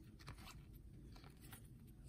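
Near silence, with a few faint soft ticks of glossy trading cards being slid and flipped through by hand.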